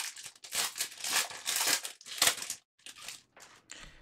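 Foil wrapper of a baseball card pack crinkling as it is torn open by hand: a run of crackly bursts over the first two and a half seconds, then a few fainter rustles.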